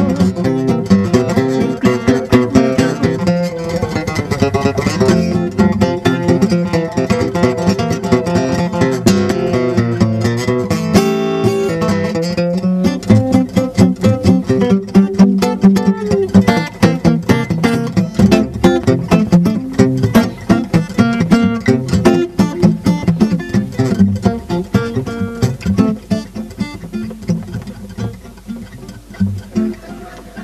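Acoustic guitar playing an instrumental passage without singing, with many quickly picked notes. It gets quieter in the last few seconds as the song comes to its end.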